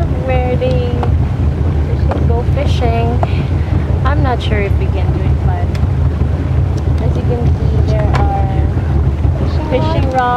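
Speedboat underway at speed: its engine runs with a steady low rumble under heavy wind buffeting on the microphone.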